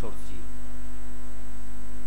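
Steady electrical mains hum through the microphone and sound system: a low buzz with its overtones and a faint high steady tone above it. A man's last spoken word trails off right at the start.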